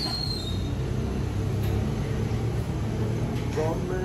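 Steady low rumble of background noise, with a short bit of a man's voice near the end.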